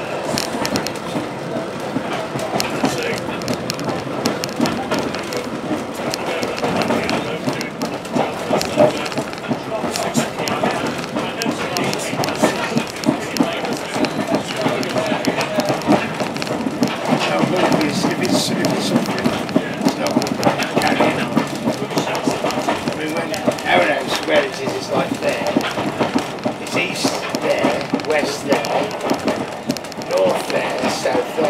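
Running noise of a passenger train heard from inside a moving coach: the wheels rumble steadily on the track, with frequent irregular clicks from the rails.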